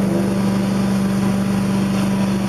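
Tile-and-grout extraction cleaning machine running with a rotary spinner tool on a tiled floor: a steady low hum.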